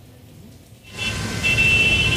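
Street traffic noise picked up by a live outdoor microphone: a low rumble and hiss that come up suddenly about a second in after a quieter moment, with a thin steady high whine over them in the second half.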